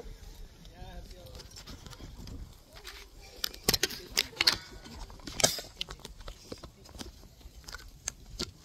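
A cluster of sharp clicks and knocks in the middle, from a loose, bent mount being handled and pushed back into place. It slides loose and won't stay put.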